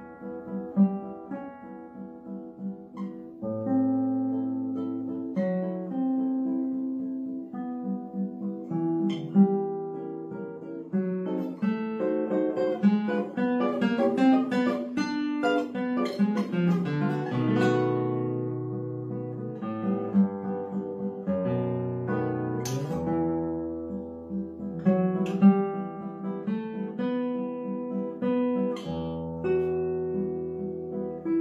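Solo classical guitar, nylon-strung, played fingerstyle: a melody over sustained bass notes, with a quick, dense run of notes in the middle and a few sharp accented strums later on.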